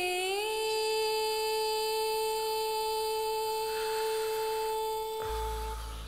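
A woman singing in Carnatic classical style, sliding up from an ornamented, wavering phrase into one long steady note held for about five seconds. Near the end the note stops and a low drone comes in.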